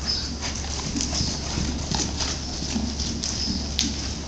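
Hoofbeats of a KWPN (Dutch warmblood) gelding cantering on indoor-arena sand footing, an irregular run of strokes over a steady low hum.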